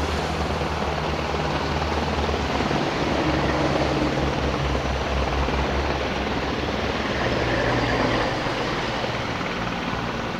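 Helicopter flying low nearby, its rotor beat and engine running steadily throughout.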